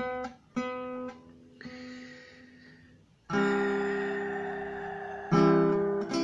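Acoustic guitar being strummed: a couple of soft chords at first, then a loud chord about three seconds in that is left to ring and fade, and another strong strum near the end.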